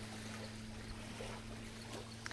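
A steady low hum with a faint hiss of outdoor noise under it.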